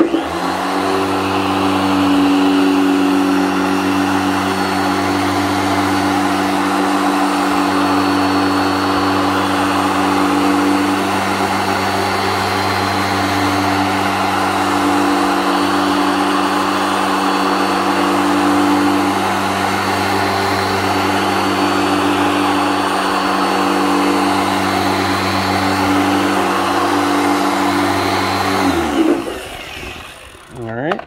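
Harbor Freight Chicago Electric dual-action polisher with a 4-inch orange foam pad running steadily at a constant speed, compounding a painted fender panel. Near the end it is switched off and its pitch falls as it winds down.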